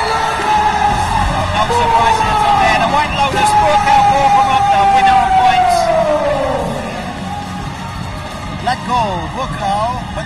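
Arena PA announcer drawing out a long, held call that slides slowly down in pitch and fades about seven seconds in, over background music. Shorter, wavering speech follows near the end.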